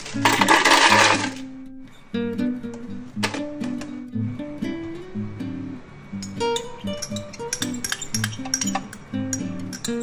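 Acoustic guitar background music, with about a second and a half of loud rattling at the start as ice is tipped into an empty plastic blender jar. Scattered light clinks follow near the end as strawberries drop onto the ice.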